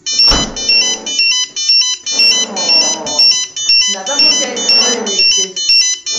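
Fire brigade DME digital pager sounding a test alarm: loud, high electronic beeping of stepped tones, about two beeps a second, starting abruptly.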